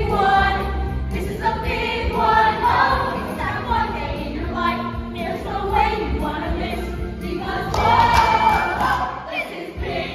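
A young ensemble singing a musical-theatre number together in chorus, with instrumental accompaniment underneath. It swells to its loudest on a held chord about eight seconds in, then breaks off briefly just before the end.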